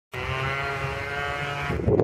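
A motor running with a steady pitched hum that stops near the end, as a man's voice begins.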